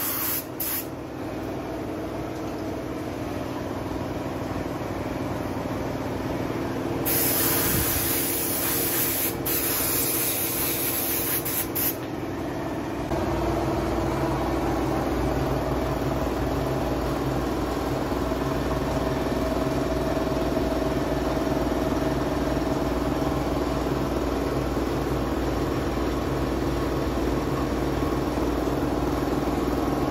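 Paint spraying in hissing bursts, briefly at the start and again in two long bursts between about 7 and 12 seconds in, over a steady machine hum. About 13 seconds in, the spraying stops and a louder, steady engine-like hum takes over.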